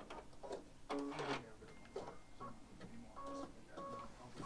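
Baby Lock Solaris embroidery machine's motors running briefly after being stopped and told to cut the thread: short pitched whirs, a group about a second in and another after three seconds.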